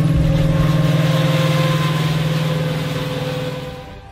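Armoured tracked vehicle's engine running steadily, a low hum with a faint higher whine, fading away over the last second.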